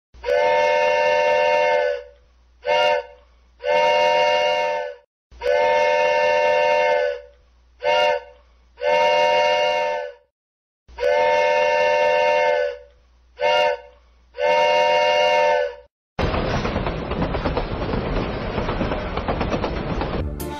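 A multi-tone signal horn sounding a steady chord in a long–short–long pattern, three times over, each blast starting and stopping abruptly. A dense rushing noise fills the last four seconds.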